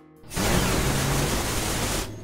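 Cartoon sound effect of a monster truck's newly turbocharged engine revving, flames from its exhaust: a loud rushing, hissing blast with a low engine tone under it. It starts about a third of a second in and stops abruptly after about a second and a half.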